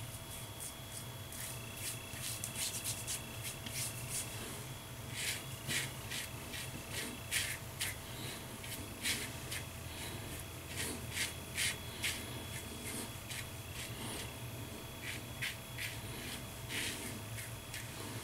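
Safety razor blade scraping through lathered stubble in short quick strokes, coming in several runs of passes, over a faint steady low room hum.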